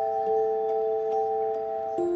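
Background music: soft, sustained bell-like notes changing chord every second or two over a light, steady ticking beat.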